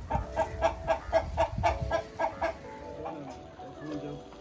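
Poultry clucking in a fast, even run of about four clucks a second, stopping about two and a half seconds in.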